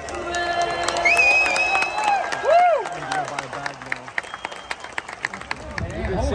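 Ballpark crowd cheering and applauding as a sung anthem finishes, with a long whistle about a second in. The clapping thins out over the last few seconds.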